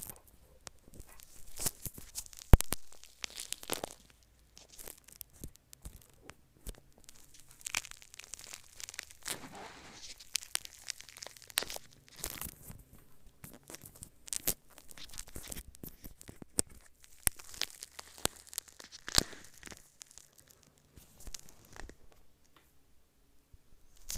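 Clear slime packed with foam beads being squeezed and worked around a microphone buried in it: dense, irregular sticky crackles and pops. One loud sharp click comes about two and a half seconds in.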